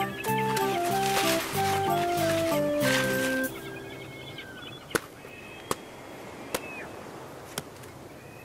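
A short cartoon music phrase with a descending melody that stops about three and a half seconds in. After it come four sharp taps, under a second apart, as a toy shovel pats sand into a bucket.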